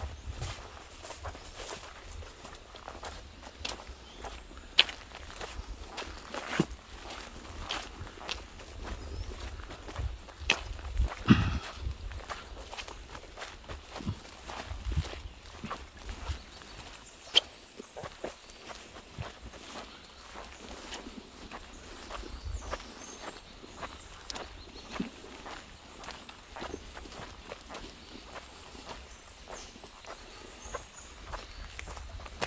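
Footsteps of a person walking at a steady pace along a dirt and grass track, feet scuffing soil and stones, with a few sharper clicks along the way.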